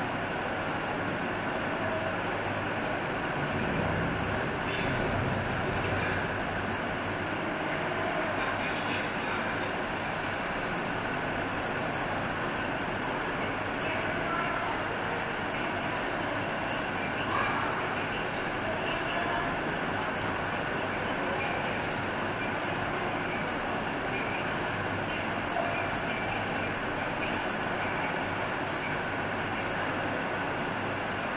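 Steady background noise with faint voices in it.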